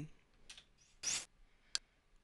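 A short breathy hiss about a second in, then a single sharp click of a computer control being pressed as a menu item is selected.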